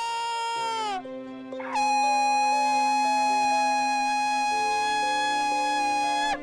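A shofar (ram's horn) blown twice: a blast that ends about a second in with a drop in pitch, then, just before two seconds in, a longer blast that swoops up at its start and is held steady. Soft background music with sustained tones plays underneath.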